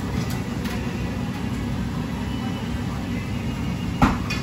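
Steady low hum of kitchen machinery, with a couple of faint light taps of a knife on a plastic cutting board within the first second as boiled prawns are halved.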